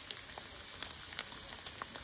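Bacon strips frying in their own fat in a pan: a steady sizzle with scattered crackles and pops.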